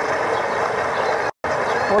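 Steady outdoor rushing noise, broken by a brief total dropout in the recording about one and a half seconds in; a voice starts just at the end.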